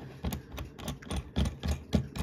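Light metal clicks and taps from handling a steel watchmaker's movement holder, its jaws and threaded adjusting screw knocking as it is turned in the fingers: a string of irregular small clicks.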